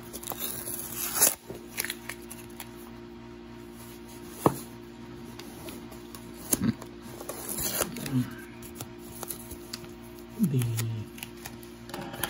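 Fingers scratching and tearing at packing tape and a paper shipping label on a cardboard box, in short irregular ripping and scraping sounds with one sharp snap partway through. Steady background music plays underneath.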